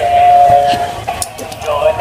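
Electronic singing voice of an interactive Care Bears plush toy playing through its small speaker: one long steady note for about the first second, then quieter broken sung phrases.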